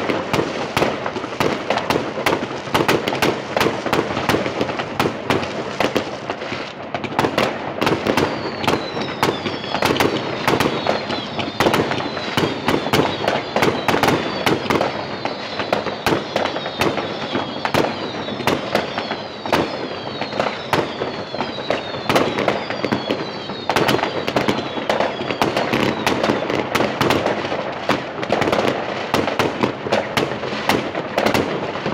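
Dense, continuous fireworks: constant bangs and crackles from many rockets and firecrackers going off across a city, with overhead shells bursting. From about eight seconds in until near twenty-four, a run of repeated falling whistles sounds over the bangs.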